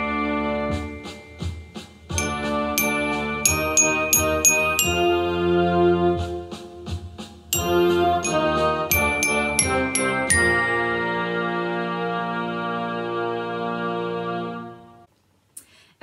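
Student bell kit (glockenspiel) with metal bars, played with two mallets: a short melody of quick struck notes and longer ringing notes, over a backing track of sustained chords. It ends on a long held note that rings and fades out shortly before the end.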